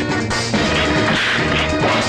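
Fight-scene background music with a steady bass beat, cut through by several short, sharp punch-and-blow sound effects.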